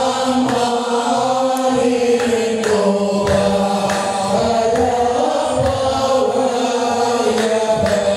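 Hamadsha Sufi brotherhood chanting a devotional chant together, over a steady beat of evenly spaced percussive strikes.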